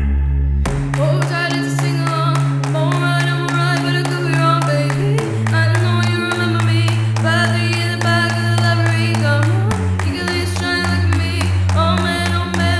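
Song music: a steady beat of sharp percussion comes in under a second in, over held bass notes that change about every four and a half seconds, with a melody above.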